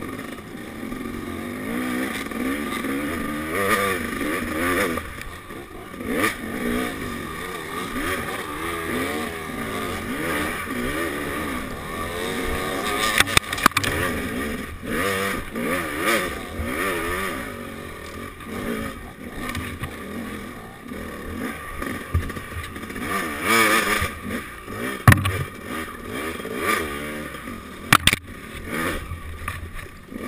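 Dirt bike engine revving up and down continuously as the bike rides a rough trail, with knocks and clatter from the bike over bumps. The sharpest knocks come about 13 s in and twice near the end.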